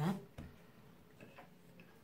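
A single light tap on the wooden worktop about half a second in, then quiet room tone.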